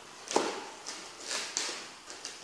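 A red latex modelling balloon rubbed and twisted between the hands as a simple balloon dog is finished. There is a sharp click about a third of a second in, then a few short, hissy rubbing sounds.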